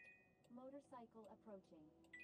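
Near silence, with a faint voice speaking in the middle and a faint high steady tone at the very start.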